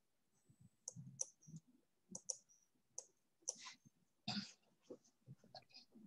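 Near silence broken by faint, irregular clicks and ticks.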